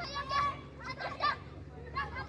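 Children shouting and calling out to each other at play, several voices overlapping.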